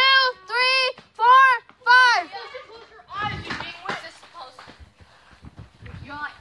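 A child's high voice calling out a slow count, four evenly spaced sung-out syllables about half a second apart, then fainter children's voices and the rustle of a handheld phone.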